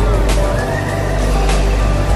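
Indoor swinging pendulum amusement ride in motion: a deep steady rumble of the ride, with riders' high gliding screams over it.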